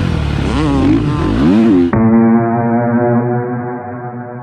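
Dirt bike engine revving up and down with wind noise. About two seconds in it cuts off suddenly to a held guitar chord of background music that slowly fades.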